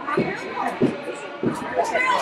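Children's voices chattering in an ice rink, with three short dull knocks.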